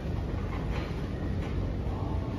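Shopping cart wheels rolling over a concrete warehouse floor: a steady low rumble with a couple of faint rattles.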